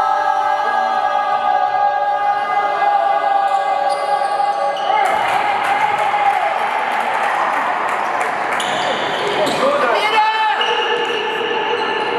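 Spectators' voices echoing through a large sports hall, with a basketball bouncing on the court.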